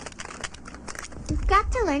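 A house of playing cards collapsing onto a table: a rapid patter of light card clicks and slaps for about the first second, giving way to a child's voice near the end.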